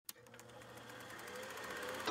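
A click, then a faint, rapid, evenly paced mechanical clatter with a low hum, fading in and growing steadily louder.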